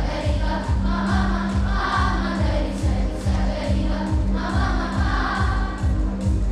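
Children's choir singing over backing music with a steady low beat of about two pulses a second; the voices drop out briefly around the middle and come back.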